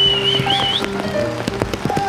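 Live reggae band music: held chords under short percussive hits, with a high wavering melody line in about the first second.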